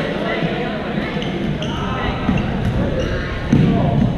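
Many voices chattering and calling across a large, echoing sports hall, with scattered sharp hits of badminton rackets on shuttlecocks. A louder thud comes about three and a half seconds in.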